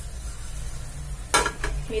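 Mustard, cumin and fenugreek seeds sizzling steadily in hot oil in an aluminium pan as a tempering is fried. A short sharp knock comes about one and a half seconds in.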